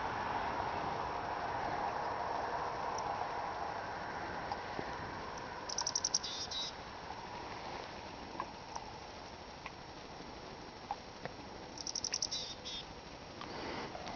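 Chickadee calling twice, about six seconds in and again about twelve seconds in: each time a quick run of high notes followed by a few lower notes, over faint background hiss.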